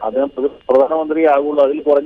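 A man speaking Malayalam over a telephone line, with a short pause about half a second in; the voice sounds thin, with no high end.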